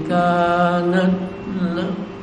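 A man reciting the Quran in a slow, melodic chant, holding long notes: one long phrase, a short break about one and a half seconds in, then a brief closing note.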